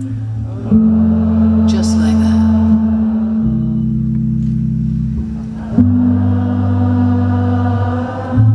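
Audience and band holding a sustained, drone-like chord, with the low held notes shifting pitch about a second in, at about three and a half seconds, and near six seconds.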